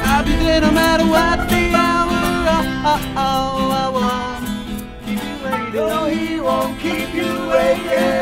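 Acoustic band playing a bouncy tune: strummed acoustic guitars with an accordion carrying held melody notes.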